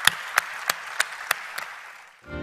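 Audience applauding, with a few single claps standing out about three times a second over the steady patter; the applause fades out near the end.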